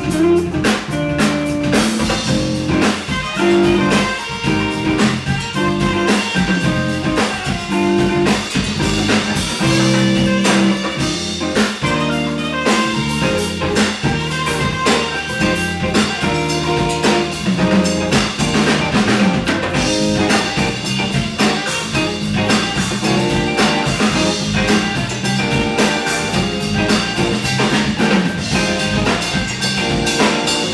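A live band playing an instrumental number, with drum kit, bass and guitar keeping a steady groove.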